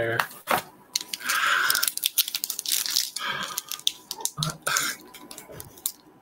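Foil booster-pack wrapper crinkling and tearing, scratchy rustles broken by many small clicks, with the busiest stretch about a second in.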